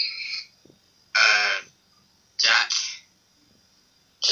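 Voices over a video call: three short vocal sounds about a second apart, with quiet gaps between them.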